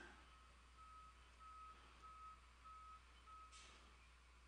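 Near silence with a faint, regular series of high beeps, five of them about 0.6 s apart, from somewhere in the background.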